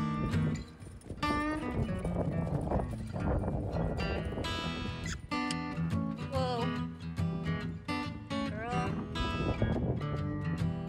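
Background music led by acoustic guitar, with a voice singing over it.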